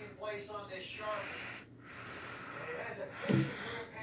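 A person's voice, mumbled and breathy with no clear words, followed by a short falling vocal sound near the end.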